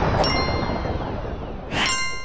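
Sound-design effects for an animated graphic: a rushing whoosh that fades away, with two bright metallic dings, a fainter one just after the start and a louder one near the end, whose high tones ring on.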